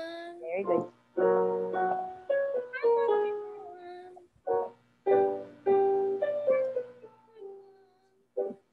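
Piano or keyboard notes stepping down a five-note scale (5-4-3-2-1), played in several short runs as a vocal warm-up pattern, with a voice singing along.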